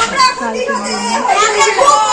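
A group of women and children singing and calling out together, several voices overlapping loudly.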